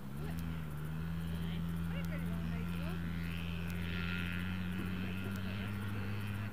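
A motor engine droning steadily as a low, even hum with a higher tone above it, and a higher whine joining it about halfway through.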